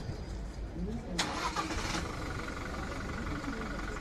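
Police pickup's engine cranked and caught about a second in, a short burst of starter noise, then running at idle with a steady thin whine.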